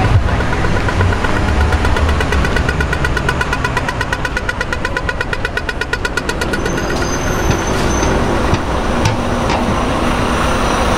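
Pedestrian crossing signal beeping rapidly and evenly while the green man is lit, fading out about seven seconds in, over a steady low traffic rumble.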